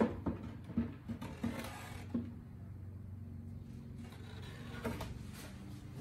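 Plywood light board knocking and scraping against the wooden back-box frame as it is handled and lifted out: several light wooden knocks in the first two seconds and a couple more near the end, over a steady low hum.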